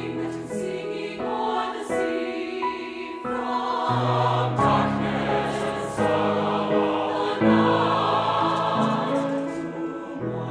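A choir singing a choral piece in sustained chords, accompanied by piano, swelling louder about halfway through.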